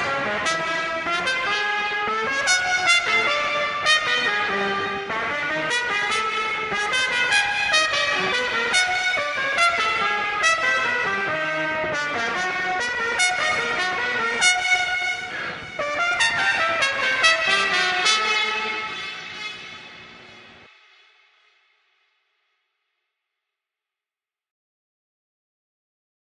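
Muted trumpet playing a melodic line of moving notes. It fades away about twenty seconds in and leaves silence.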